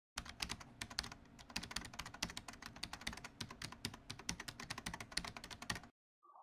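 Computer keyboard typing: a quick, uneven run of key clicks, about nine a second.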